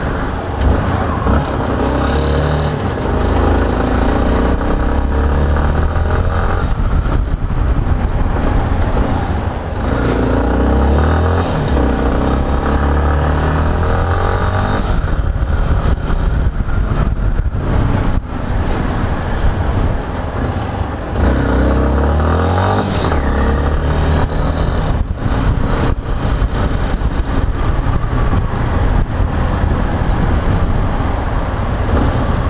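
Yamaha XTZ 250 Ténéré's single-cylinder engine under way at town speeds, speeding up and easing off several times, its pitch rising in each pull and falling back at the shifts and when slowing.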